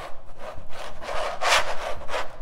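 Metal trowel scraped across a stretched, paint-covered canvas in a few dragging strokes. The loudest stroke comes about one and a half seconds in.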